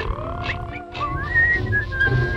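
A whistled tune over a music backing: warbling trills, a quick upward slide, then a long held high note near the end.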